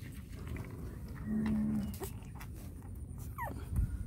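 Newborn puppy suckling from a feeding bottle, with small wet clicks. About a second in comes a short, steady, low-pitched animal call. Near the end there is a brief rising squeak.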